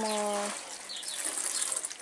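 Water showering from a watering can's rose onto seedlings in plastic cell trays, a steady hiss.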